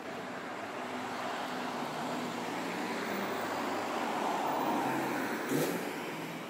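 City street traffic: a motor vehicle passes close by on the road, its tyre and engine noise growing to a peak about four to five seconds in and then easing off. A brief sharp knock sounds just before the end.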